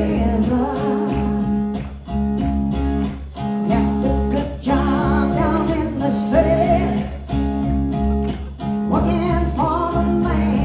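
A woman singing live with a band: strummed acoustic guitar and drums under her voice, with a steady low bass line.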